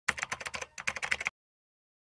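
Rapid computer-keyboard typing clicks, a quick run of keystrokes lasting just over a second and stopping abruptly.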